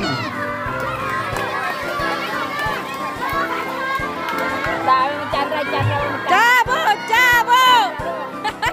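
A crowd of spectators shouting and cheering racers on, many voices at once, with a string of loud, high-pitched shouts in the last two seconds.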